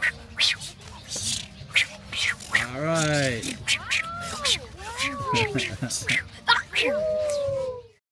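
Several young children's voices shouting and squealing in high, rising-and-falling calls, mixed with many short sharp sounds. The sound cuts off abruptly just before the end.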